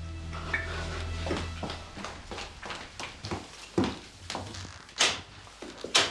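A sustained music cue fades out, followed by a string of irregular knocks and clicks from footsteps and a wooden front door being unlatched and pulled open, with the loudest clack about five seconds in.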